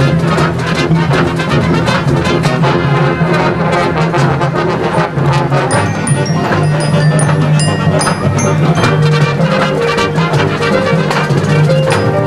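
Marching band playing loud: brass, including sousaphones, holding sustained chords over a steady run of drumline strokes.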